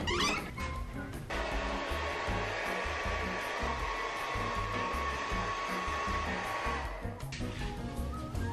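Handheld hair dryer running steadily from about a second in until about a second before the end, over background music with a low beat.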